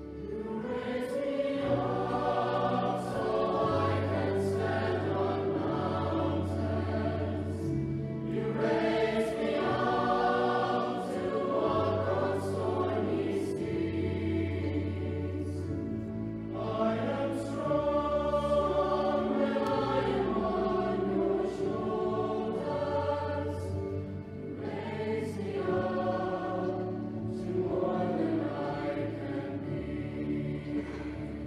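Mixed high-school choir singing in long held phrases, with low sustained accompaniment notes underneath that change every couple of seconds.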